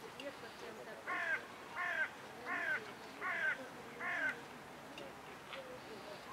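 A bird calling five times in a steady series, short calls about three-quarters of a second apart, starting about a second in.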